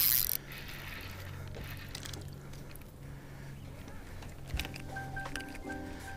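Low steady hum of an electric trolling motor, with a short noisy burst at the very start. Background music with a repeating beeping figure comes in about four and a half seconds in.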